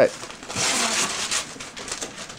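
Wrapping paper and a cardboard box being handled: a burst of paper rustling and crinkling about half a second in, fading to quieter rustles.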